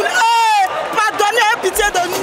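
Mostly speech: a woman talking animatedly into a microphone in a stadium crowd, with one drawn-out exclamation early on. Music with deep bass comes in near the end.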